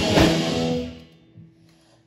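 Live rock band with two electric guitars, bass guitar and drum kit playing, then stopping together a little under a second in, leaving the sound ringing away to near quiet: a break in the song.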